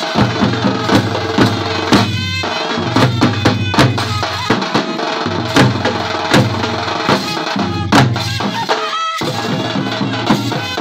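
Live Bhawaiya folk band playing an instrumental: a trumpet carries the melody over a busy rhythm of stick- and hand-beaten drums.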